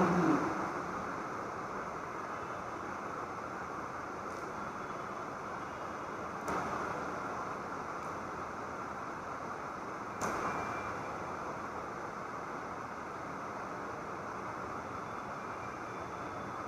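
Steady room noise with no speech, broken by two short clicks, about six and a half and ten seconds in.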